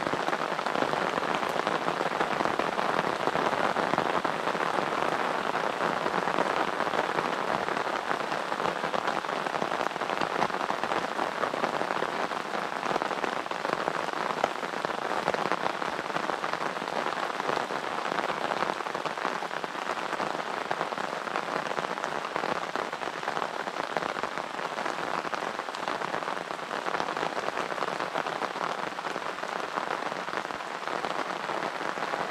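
Heavy rain lashing down steadily, a dense, even hiss, with the drops hitting the microphone of a waterproof GoPro.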